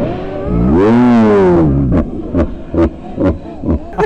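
A man's cry played back in slow motion: one long, deep, drawn-out voice whose pitch rises and then falls, followed by a string of short sharp bursts.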